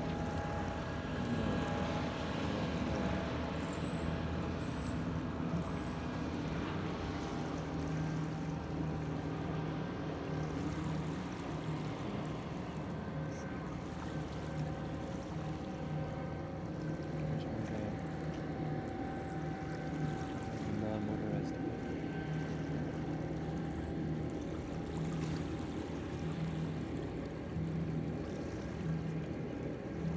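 Small waves lapping and trickling on a sandy lakeshore over a steady low hum, with a few faint, short high chirps scattered through.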